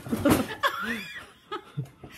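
A person laughing in several short bursts.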